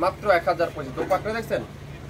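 A man talking in Bengali, over a steady low hum.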